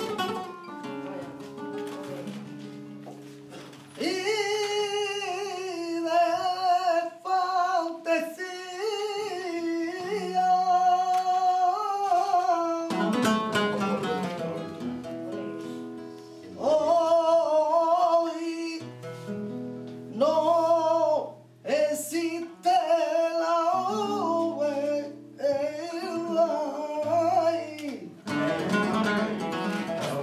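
Flamenco cantaor singing fandangos with long, wavering, ornamented phrases, accompanied by a flamenco guitar. The guitar plays alone at first, the voice comes in about four seconds in, the guitar fills a short gap between two sung lines, and it plays alone again near the end.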